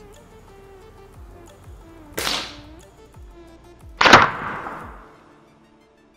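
Air rifle fired at small balloons: two sharp cracks about two seconds apart, the second the louder, with a tail that fades over about a second.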